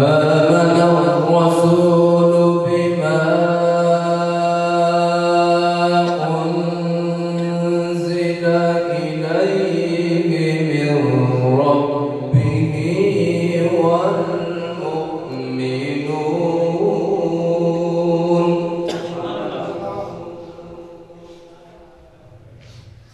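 A man reciting the Qur'an in the melodic, chanted style of tilawat, drawing out long held notes that slide and waver in pitch. The phrase begins abruptly and trails off over the last few seconds.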